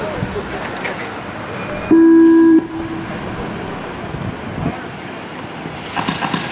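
Race-start tone: one loud, steady electronic beep lasting under a second, about two seconds in, signalling the start of an RC car race. After it, a faint high whine rises, from the RC cars pulling away.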